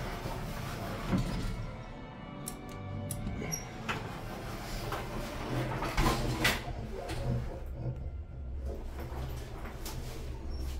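Elevator's two-speed sliding doors closing, with knocks and a clunk about six seconds in. A steady low hum follows as the car sets off upward.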